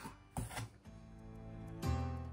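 Quiet background music of sustained chords, with new chords struck shortly after the start and again near the end.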